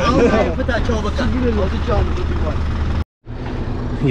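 People talking over a low, steady vehicle engine rumble. The sound drops out suddenly for a moment about three seconds in, then voices resume.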